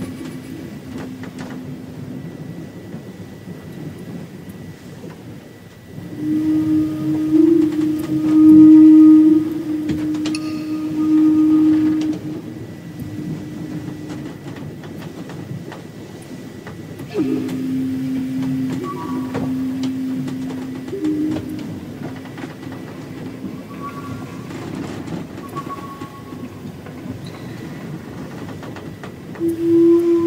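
Low Native American-style flute playing slow, long held notes over a breathy hiss, stepping between a few pitches; the notes swell louder about six seconds in and again near the middle.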